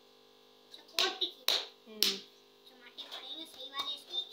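A steel tumbler knocking on a wooden rolling board as it is pressed through rolled dough to cut rounds: three sharp knocks about half a second apart.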